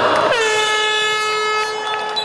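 Air horn blown: its pitch drops sharply as it starts, then holds one steady note.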